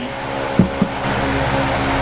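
Electric fan running with a steady loud whoosh, with two short knocks about a quarter of a second apart a little over half a second in.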